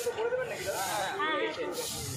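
Hand brooms sweeping a paved road, a hissing swish at the start and another near the end, with voices talking in between.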